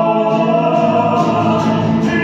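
Several voices singing together in a classical, operatic style, holding long notes.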